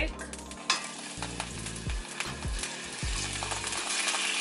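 Minced garlic dropped into hot melted butter in a cast-iron skillet: a sizzle starts suddenly just under a second in and carries on steadily as the garlic fries.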